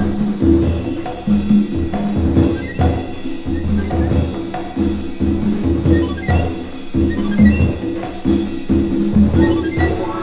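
Jazz-soul band groove: drum kit and hand percussion keeping a steady rhythm over a repeating electric bass line, with pitched chords in the middle register.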